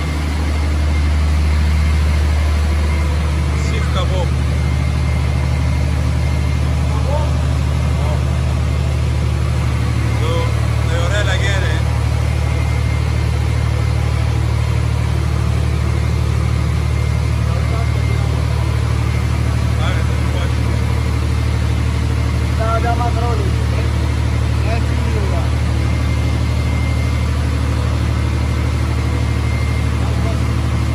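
A steady, loud low drone from an idling engine or similar motor, unchanging throughout, with faint voices in the background.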